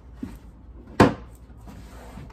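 Hinged plastic flap of a trash can lid swinging shut with one sharp clack about a second in, after a faint knock just before.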